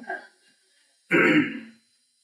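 A man clearing his throat once into a close microphone, a short rough sound about a second in, between stretches of silence.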